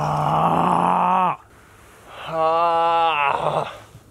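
A man groaning twice in pain after crashing off a snowboard rail into the snow: a strained, steady groan of about a second, a short silence, then a longer groan that rises and falls in pitch.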